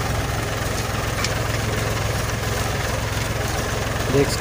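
Tractor diesel engine running steadily under load as it pulls a 20-disc harrow through the soil.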